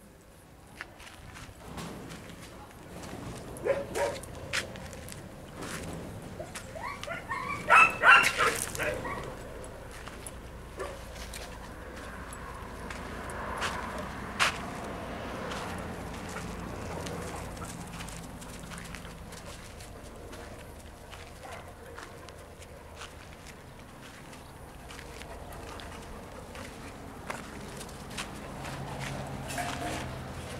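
A dog barks in a short run about eight seconds in, the loudest sound here, after a woman's brief laugh. Quieter dog movement and low talk fill the rest.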